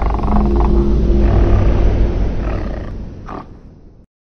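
Intro logo-reveal sound effect: a deep rumble with held low notes, fading away over the last two seconds, with a short swish near the end.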